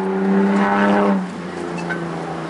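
A motor vehicle's engine running on the street at a steady pitch, swelling during the first second and easing off a little past the middle, over a constant low hum.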